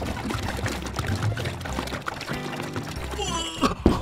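Water pouring from a large plastic water-cooler jug into a glass tank as it fills, under background music.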